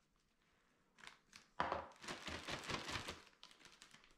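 Plastic zip-top bag crinkling and rustling as powdered sugar is tipped into it from a glass measuring cup over chocolate-coated cereal. It comes as a close run of light crinkles and ticks, starting about a second and a half in and lasting about two seconds.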